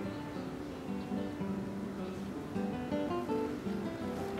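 Background music: an acoustic guitar playing a melody of plucked notes.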